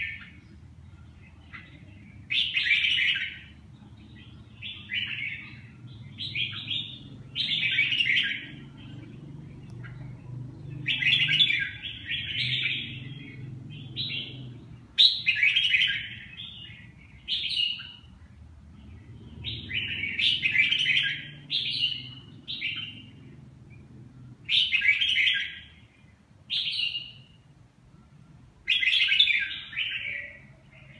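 Red-whiskered bulbul singing: short, bright warbled phrases, one every second or two.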